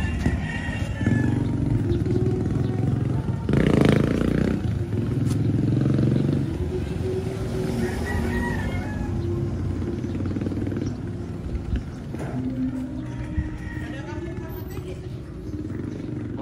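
Street ambience of voices, music and motorcycle engines, with a brief louder noise about four seconds in.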